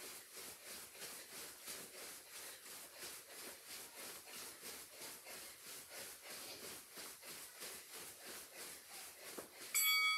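Light footfalls of jogging in place on a carpeted floor, an even patter of about three to four steps a second. Near the end an electronic interval-timer beep sets in, marking the end of the 30-second interval.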